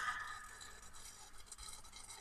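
The last of the background music dies away, leaving a faint, even hiss with a few tiny ticks.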